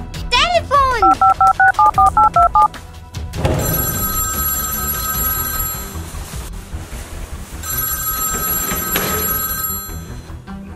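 A phone being dialled, a quick run of about ten two-tone keypad beeps, followed by the line ringing: two long electronic rings a few seconds apart.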